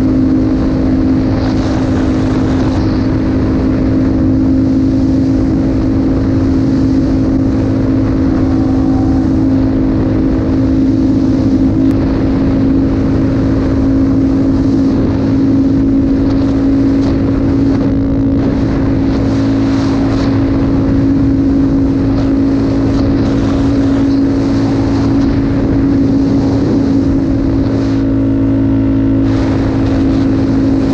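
Yamaha Raptor 700R's single-cylinder four-stroke engine running at a steady cruising speed, its pitch holding nearly constant throughout.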